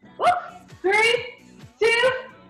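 A dog barking repeatedly, about once a second, over background music with a steady beat.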